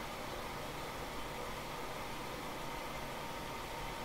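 Steady, even hiss of room tone and recording noise, with no distinct sound events.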